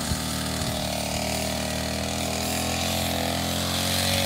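Petrol string trimmer engine running steadily while mowing tall grass, its pitch wavering slightly with the load.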